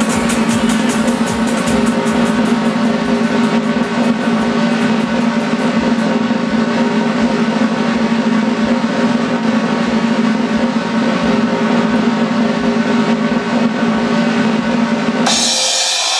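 Accompanying music built on a continuous fast snare drum roll over a held low chord, the tension-building roll under a stunt. About a second before the end it breaks into a bright crash as the music changes.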